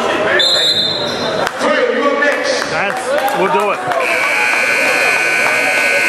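Gym scoreboard horn sounding a steady, loud tone from about four seconds in as the game clock runs out, over shouting voices in the gym. A brief high tone sounds about half a second in.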